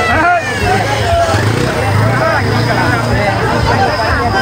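Crowd hubbub: many people talking at once, with a steady low hum underneath that swells in the middle.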